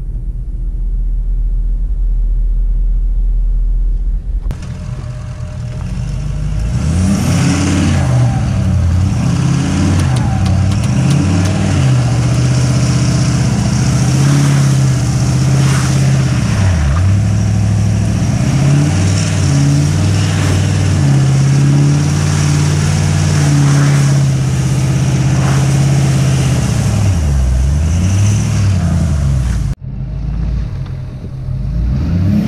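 Ford 6.7 Powerstroke diesel pickup. For the first few seconds it idles in park with a deep, steady rumble. It then drives through snow with the engine revving up and falling back again and again, with wind and tyre hiss on a microphone mounted on the truck's side.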